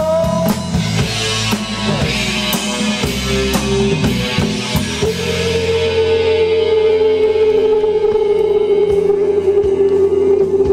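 Live band playing, with drum kit and electric guitar. About halfway through, one long held note takes over and sinks slightly in pitch as the drumming thins out.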